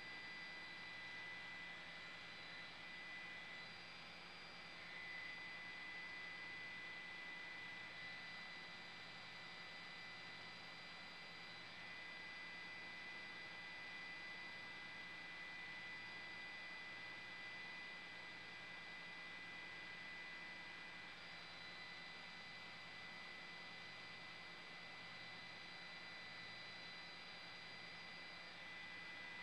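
Faint steady hiss with a few thin, unchanging high tones: electronic noise of a raw broadcast feed with no programme sound on it.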